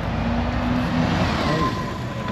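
Double-decker bus driving past close by, its engine and tyre noise swelling and then easing, with a low steady hum and a faint whine near the end.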